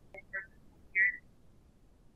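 Three brief chirps coming through a video-call line, the last and loudest about a second in.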